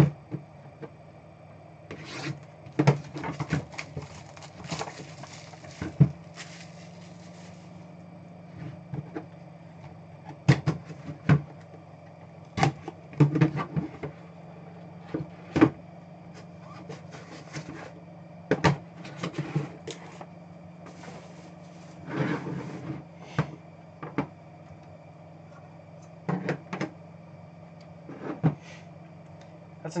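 Plastic shrink-wrap rustling and a cardboard card box being handled: irregular taps, clicks and scrapes as the box is unwrapped, its lid lifted off and the cards slid out. A steady low hum runs underneath.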